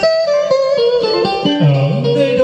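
Karaoke backing music led by a plucked guitar, with a short falling run of notes part-way through.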